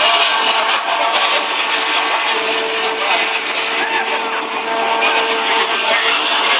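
The Great Elephant of Nantes, a giant mechanical walking elephant, running: its diesel-driven hydraulics make steady machine noise with a continuous whine.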